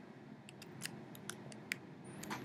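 Computer mouse clicking: a quick, irregular run of small, faint clicks.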